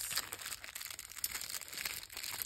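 Hands rustling and crinkling while untying and opening a small cloth drawstring pouch; an irregular rustle with no clear knocks.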